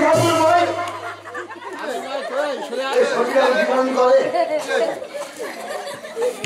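Indistinct chatter of several voices talking over one another, starting just as the accompanying music breaks off.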